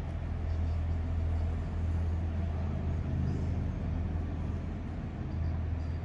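A steady low rumble, swelling a little through the middle and easing near the end.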